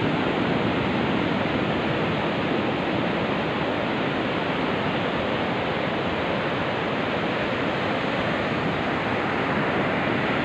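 Steady roar of ocean surf breaking along a sandy beach, an even wash of noise with no distinct waves or other sounds standing out.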